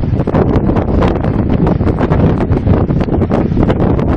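Water rushing steadily and loudly down the spillway of the Nagarjuna Sagar dam through its open crest gates, a dense low-heavy rush, with wind buffeting the microphone.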